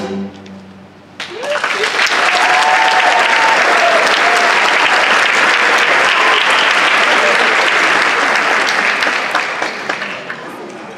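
Audience applauding in a hall after a string orchestra's final chord. The last notes ring out for about a second, then the clapping starts, holds steady and thins out near the end.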